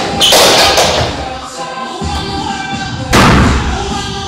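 Two heavy thumps over background music: the first, just after the start, as a man drops from a sofa onto the floor, and a second, about as loud, a little after three seconds in.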